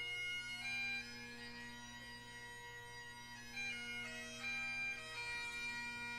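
Great Highland bagpipe played solo: the drones hold a steady pitch under a chanter melody moving note by note, the playing softer for a couple of seconds after about one second in.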